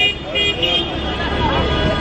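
Car horns honking in city street traffic, steady pitched beeps in the first second over the rumble of passing vehicles.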